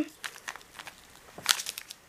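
Faint crinkling and rustling of a plastic bag and paper pages being handled, with a few short crackles about a second and a half in.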